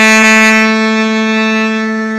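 Tenor saxophone holding one long, steady note, easing slightly softer near the end.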